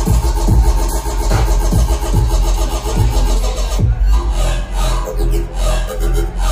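Loud electronic bass music played by DJs over a club sound system, with heavy sub-bass and a steady kick drum. About two-thirds of the way through, the kick drops out and gliding synth sounds take over.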